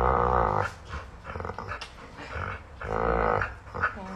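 A Rottweiler making drawn-out, low, growl-like groans while being cuddled. The calls come in pitched stretches of about half a second: one at the start, smaller ones in the middle, and another long one near the end. It is a sound of contentment, not a threat.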